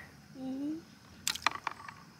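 A short murmur of a voice, then a few light clicks and taps about a second and a half in, as seashells are handled.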